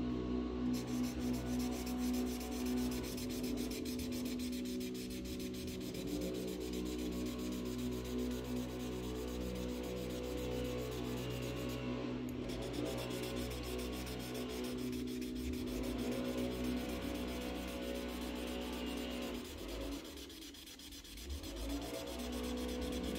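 Imagine Ink mess-free marker rubbing back and forth over the coated paper, over the loud, steady hum of a lawn mower running outside. The mower's engine note holds steady throughout and softens briefly near the end.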